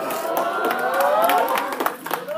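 A room of students laughing and cheering together, with a few scattered hand claps in the second half.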